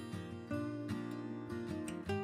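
Background music with a strummed acoustic guitar, its chords changing every half second or so.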